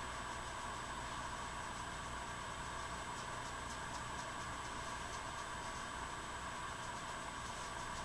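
Steady faint hum and hiss of room tone, with faint soft swishes of a makeup brush about halfway through and near the end.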